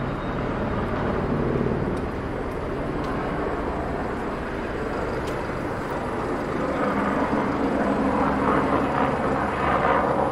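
Street traffic: engines of passing vehicles, a van and a double-decker bus close by at the start, with engine noise swelling again in the last few seconds.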